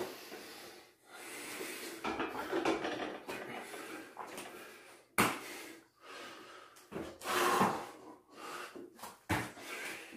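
A man breathing hard and loudly from exertion, one forced breath about every second, as he does pull-ups and burpees. A sharp thump about five seconds in and another near the end.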